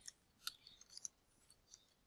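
Near silence with a few faint computer keyboard keystroke clicks, three or four spaced about half a second apart.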